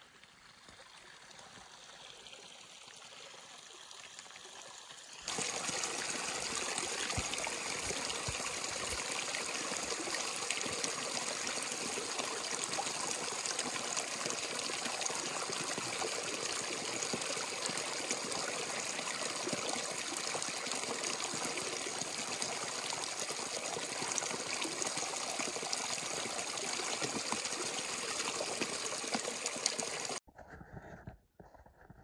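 Small mountain stream trickling and gurgling, with water running into a soft plastic water bag held in the flow to fill it. Faint at first, then suddenly much louder and steady from about five seconds in.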